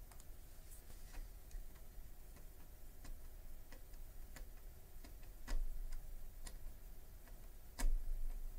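Scattered light clicks and ticks from a small screwdriver and plastic lamp parts being handled as small screws are fitted, with two louder clicks about five and a half seconds in and near the end.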